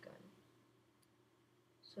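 Near silence: faint room tone, with one faint click about halfway through.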